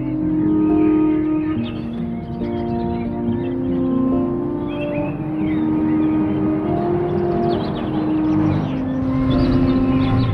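Slow background music of long held notes that step from one pitch to the next every second or two, with a car engine running low underneath and short high chirps scattered over it.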